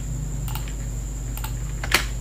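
Computer keyboard keys pressed: three short clicks, the last and loudest near the end, over a steady low hum.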